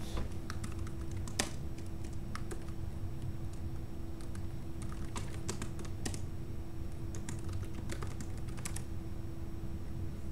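Computer keyboard typing in irregular bursts of clicks, over a steady low hum.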